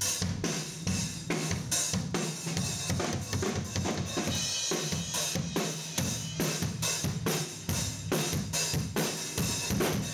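Acoustic drum kit played in a steady groove, with kick, snare and cymbals, in a large studio live room, recorded on a cell phone to capture the room's sound.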